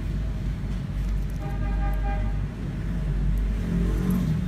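Steady rumble of road traffic, with a vehicle horn sounding once for about a second in the middle.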